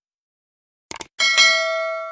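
Subscribe-button animation sound effect: a quick mouse double-click about a second in, then a bright notification bell chime that rings on and slowly fades.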